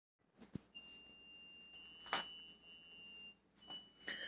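Quiet room with a faint, thin, steady high-pitched whine and a few soft clicks, the loudest about two seconds in.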